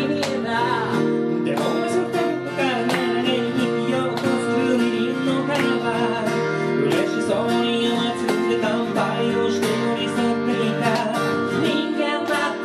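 A nylon-string classical guitar and a steel-string acoustic guitar strummed together, with two male voices singing a song.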